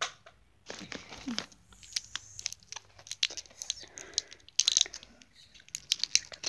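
Stiff plastic blister packaging crinkling and crackling in irregular clicks as small figures are pushed out of it by hand, close to the microphone.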